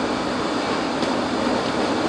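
Steady background hum and hiss of room air handling, with a faint tick about a second in.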